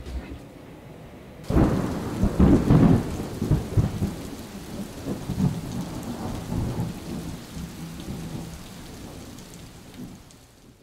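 A thunderclap breaks about a second and a half in, with a deep rumble that is loudest for the next couple of seconds and slowly dies away, over steady rain.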